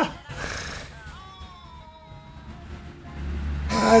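Audio from a fan-compilation clip: background music with a high, wavering voice, like a woman's drawn-out laugh, through the middle. A short burst of hiss comes about half a second in, and louder voices or music come in near the end.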